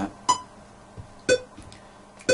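Metronome ticking at 60 BPM: short pitched clicks evenly spaced one second apart, two of them here.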